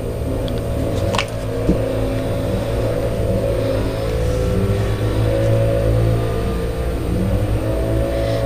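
A vehicle engine running steadily, its pitch rising and falling slightly as it revs.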